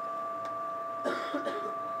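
Soft scraping of a rubber spatula against a small bowl as minced onion is pushed into a pot, over a steady two-note hum in the room.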